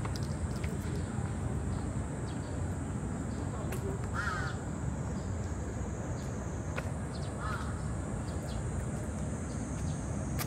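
A crow cawing twice, about four seconds in and again near the end, over steady outdoor background noise with a constant high hiss.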